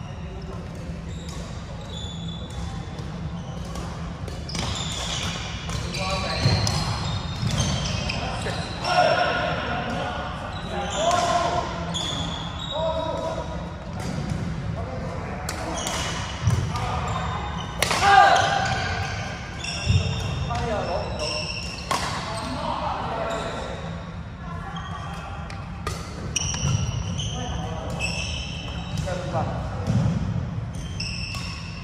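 Badminton play in a sports hall: racket strikes on the shuttlecock as sharp clicks, sneakers squeaking briefly on the court floor, and indistinct players' voices, all echoing in the hall.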